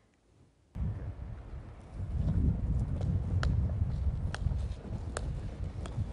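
Skateboard wheels rolling over outdoor paving, a low rumble that starts under a second in and grows louder about two seconds in. From about three seconds in, sharp clicks come closer and closer together: a golf ball bouncing on the ground.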